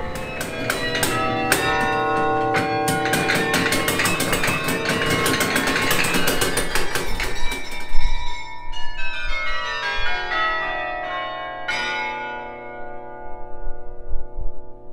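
Utrecht Dom tower carillon played from its baton keyboard: a fast run of many bell notes, then a loud chord about eight seconds in and a last stroke near twelve seconds, after which the bells ring on and fade.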